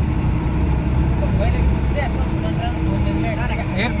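Steady low rumble of a vehicle's engine and road noise heard inside the passenger cabin, with scattered voices.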